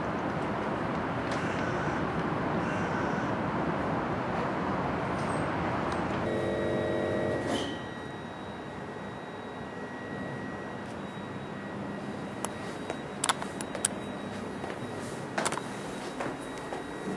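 Steady hum of city traffic, then quieter street ambience with a thin steady high tone and several sharp clicks near the end.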